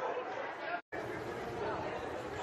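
Indistinct chatter of nearby spectators at a soccer match. The sound cuts out completely for an instant a little before halfway through.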